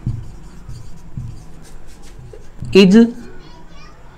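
Marker pen writing on a whiteboard in short scratchy strokes, squeaking briefly near the end.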